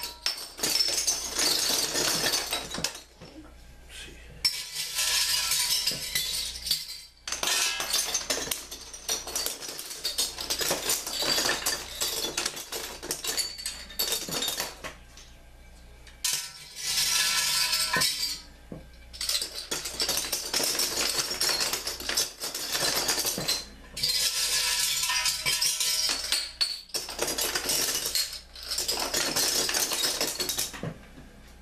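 Metal beer bottle caps dropped by the handful through the hole in the top of a glass-fronted wooden shadow box, clinking and rattling as they tumble onto the pile inside. The clatter comes in bursts of a few seconds with brief pauses between handfuls.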